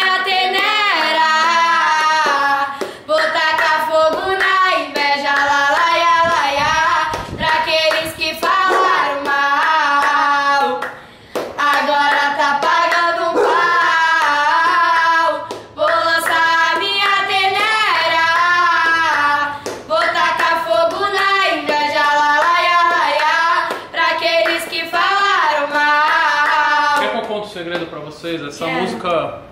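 Two girls singing a song together without accompaniment, with hand claps along the way; the singing slides down and stops near the end.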